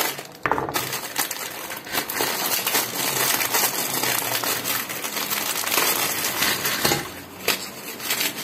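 Hands crumbling a dry, brick-shaped block of food over a metal tray: a continuous crunchy crumbling and scraping, scattered with small clicks.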